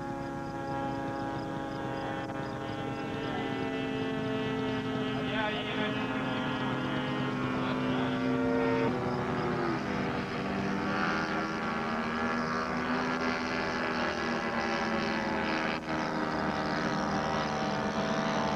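Radio-controlled model airplane engine running in flight, a steady buzz whose pitch drifts slowly down and then shifts about nine seconds in as the plane moves about the sky.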